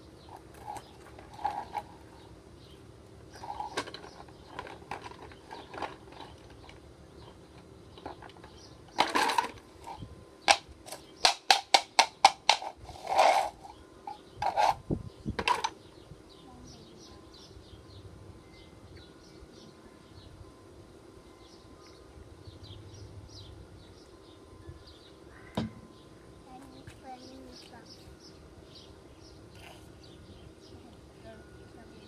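Toy blocks clattering into a plastic bucket: a run of about eight sharp clacks in quick succession about ten seconds in, with a few heavier knocks around it, and scattered softer knocks before and after.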